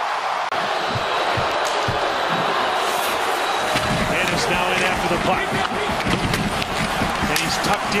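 Ice hockey game sound in an arena: a steady crowd hubbub. From about four seconds in come the scrapes of skates and the clacks of sticks and puck on the ice and boards.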